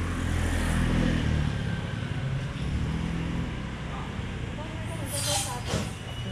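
Low rumble of a motor vehicle engine running close by, loudest in the first second and again around two to three seconds in, with voices toward the end.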